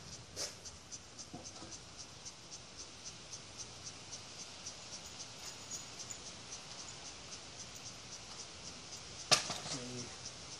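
Insects chirping steadily outdoors at about three chirps a second, with a few faint handling knocks, then one sharp knock near the end as a wooden 2x6 board is set down on the concrete driveway.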